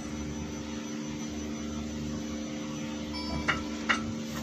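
Steady low machinery hum with a few constant tones, the running equipment of an RTG container crane heard from inside its operator cabin. A few short high blips and a click come near the end.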